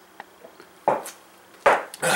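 Two sharp knocks about three quarters of a second apart, each fading quickly, as emptied aluminium beer cans are set down hard.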